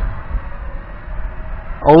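Wind buffeting the microphone in uneven low rumbles, over the faint steady buzz of a small toy quadcopter's coreless motors as it hovers.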